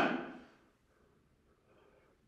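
A man's voice trails off in the first half second, then near silence: room tone, with only a very faint soft sound shortly before the end.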